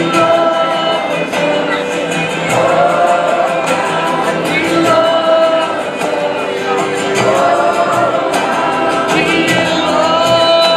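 Live band playing an acoustic, bluegrass-style song on fiddle, acoustic guitar, upright bass and mandolin, with voices singing together over it.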